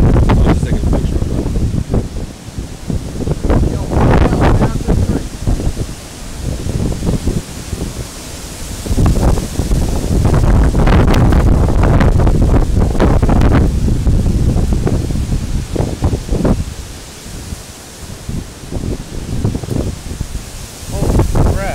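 Storm wind gusting hard across the microphone, with leaves and branches rustling. The strongest gusts come about four seconds in and again from about ten to fourteen seconds in.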